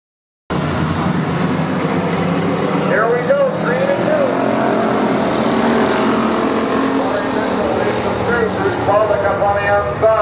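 Engines of a pack of Thunder Car stock cars running together on a paved oval, a dense, steady sound that cuts in abruptly about half a second in.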